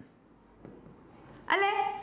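Faint scratching of a marker pen writing on a whiteboard, then a woman's voice speaking a word near the end.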